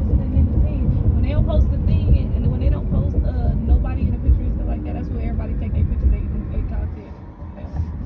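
Car driving at speed, with a loud, steady rumble of road and wind noise that eases off about seven seconds in. Indistinct voices or singing sound over it.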